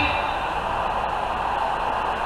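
Steady background hum and hiss with no clear event, a pause between phrases of a preacher's talk.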